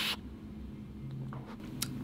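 A breathy rush of air drawn through a squonk vape mod's atomiser, cutting off just after the start. Then quiet room tone with a faint short hum about a second in and a small click near the end.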